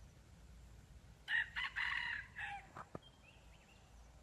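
Red junglefowl cock crowing once: a short crow broken into about four clipped parts. A single sharp click follows just after.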